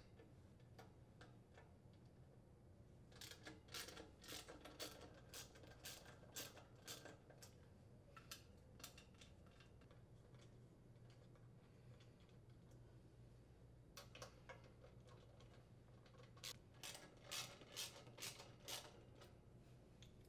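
Faint clicking of a hand ratchet with a 5/16-inch socket, in two runs of sharp ticks a few seconds apart, as it loosens the nuts that hold the condenser fan motor to the grill cover.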